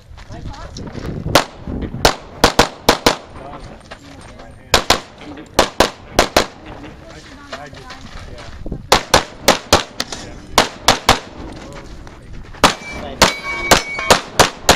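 Pistol shots fired in quick pairs, about two dozen in several rapid strings separated by short pauses: a competitor shooting a USPSA stage.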